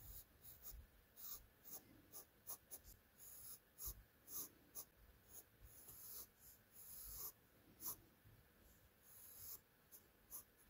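Graphite pencil sketching on sketchbook paper: quiet, short pencil strokes in irregular runs, a few per second, with a few faint low bumps.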